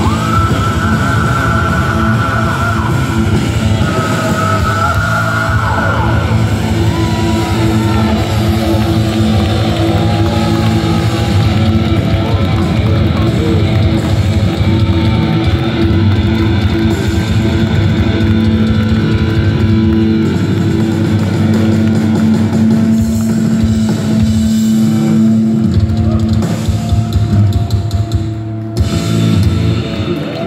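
Heavy metal band playing live through a PA: distorted electric guitars, bass and drum kit, with long held notes over sustained low chords. The sound drops briefly near the end.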